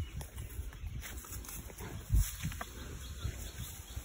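A cow moving and feeding: irregular low thuds and grass rustling, with one louder low thump about two seconds in.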